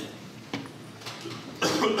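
A single short cough about one and a half seconds in, close to the microphone, after a quiet pause.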